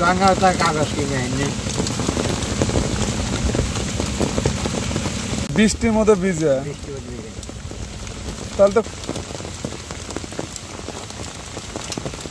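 Steady rain falling, a dense hiss dotted with individual drop ticks. It eases somewhat after about seven seconds.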